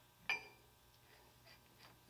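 Quiet room tone with one short click about a third of a second in, then a few faint ticks: a metal 'third hand' clamp being handled on a steel polished rod.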